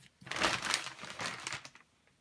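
Thin plastic shopping bag and plastic-sleeved comic books crinkling and rustling as they are handled. The rustling starts just after the beginning and dies away near the end.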